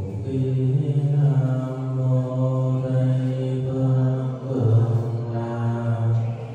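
A low man's voice chanting a Buddhist prayer in long, held tones: two drawn-out phrases with a brief break about four and a half seconds in.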